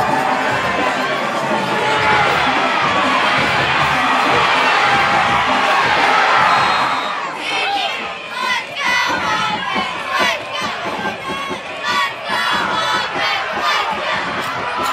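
Stadium crowd cheering and shouting during a high school football play: a dense, steady crowd noise for the first half that breaks up about halfway into separate shouts and yells.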